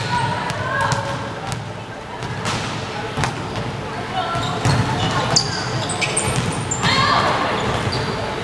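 Indoor volleyball rally: the ball struck sharply several times amid players' shouts and calls, with the voices growing louder near the end.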